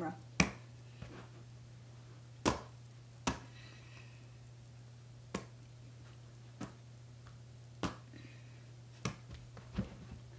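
A leather football being tossed and caught, giving scattered sharp slaps and thumps, about eight spread unevenly through the stretch, as it lands in the hands or hits the floor and furniture. A steady low hum runs underneath.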